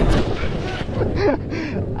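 Wind buffeting and rumbling on a GoPro's microphone as the rider tumbles off onto grass, with a short vocal cry about a second and a half in.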